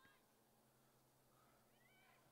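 Near silence, with faint high wavering calls just after the start and again near the end.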